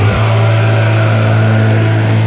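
Sludge/post-metal music: a heavy, low chord held steady under a dense wash of sound.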